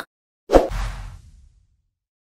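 A whoosh sound effect with a low thump, starting suddenly about half a second in and fading away over about a second.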